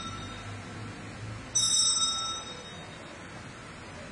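A cluster of small altar bells (Sanctus bells) rung once about a second and a half in, a bright jingling ring that fades within a second. This is the bell signal rung at the consecration of the Mass.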